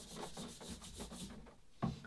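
A cloth rubbing thinned varnish into the plywood planking of a wooden canoe hull, working it down into fissures in the finish: a faint, quick scrubbing that dies away about a second and a half in.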